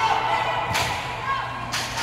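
A volleyball being hit by hand twice, about a second apart: two sharp slaps in a large gym hall.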